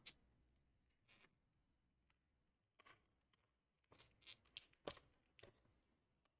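Faint, short plastic scrapes and clicks as a plastic pry piece is worked under a laptop battery held down by adhesive. There is a single scrape about a second in, another near three seconds, then a quick run of several toward the end.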